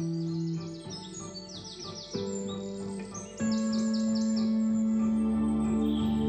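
Background music of held chords that change twice, overlaid with several bursts of quick, high bird chirps in rapid runs.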